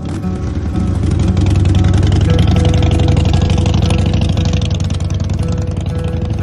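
Harley-Davidson V-twin motorcycle engine pulling away with a rider and passenger aboard, getting louder about a second in and then easing slightly as the bike moves off. Background music plays faintly underneath.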